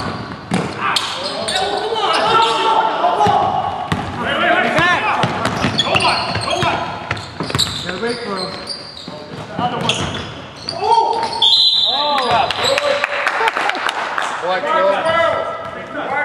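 A basketball being dribbled and bouncing on a hardwood gym floor, mixed with players calling out. Everything echoes in the large gym.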